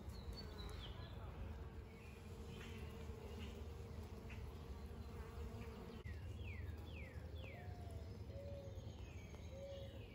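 Honeybee colony buzzing steadily over open hive frames, a low even hum. A bird chirps in the background, three quick falling chirps between about six and eight seconds in.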